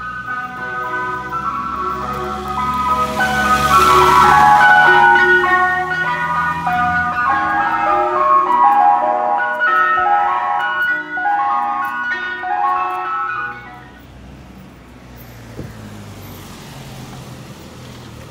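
Ice cream van chimes playing a melody of short, stepped notes, with a car driving past close by about four seconds in. The tune stops a little after two-thirds of the way through, leaving low traffic noise.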